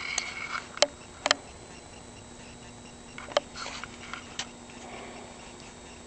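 A few sharp, isolated clicks at uneven intervals, the loudest about one second in and a little past three seconds in, with light rustling over a faint steady hum.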